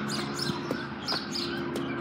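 Outdoor background: a steady low hum with a few faint high bird chirps and several light taps, such as footsteps on concrete.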